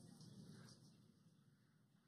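Near silence: a faint hiss that fades away over the first second or so.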